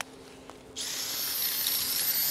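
Cordless drill starting just under a second in and running steadily at speed, a hissing whir with a thin high whine, boring into the ice beside a goal peg that is stuck fast.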